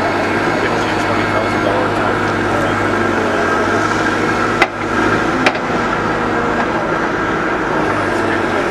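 Mobile excavator running with a steady drone and a whine as its tiltrotator arm is worked, with crowd chatter behind. Two sharp knocks come about halfway through, under a second apart.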